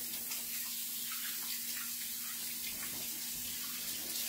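Kitchen tap running steadily into a sink while hands are washed under it.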